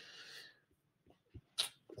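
A man's short, soft breath out through the nose as he pauses, then near silence with a few faint clicks.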